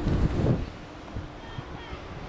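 Wind blowing across an open cruise-ship deck and buffeting the microphone, a steady rush of noise that is strongest in the first half second and then settles lower.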